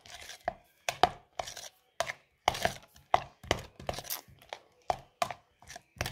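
A spoon knocking and scraping against the inside of a plastic jar as it stirs a chopped-onion mixture, in quick uneven taps about three a second.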